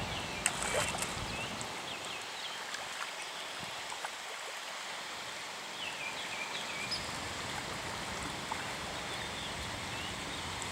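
Carp splashing and churning the water as they spawn in shallow flooded grass, with a few sharper splashes about half a second in. Faint bird chirps around six seconds in.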